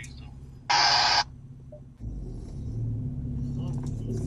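Vehicle engine running at low speed, heard from inside the cab, with a loud half-second burst of hiss-like noise about a second in. About halfway through, the engine gets louder and stays louder.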